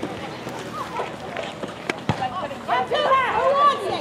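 Voices on an outdoor netball court calling out, loudest and most lively near the end, with a sharp knock about two seconds in.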